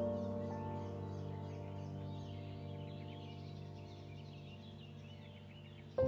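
Soft ambient background music of sustained keyboard-like tones, fading gradually, with bird chirps over it.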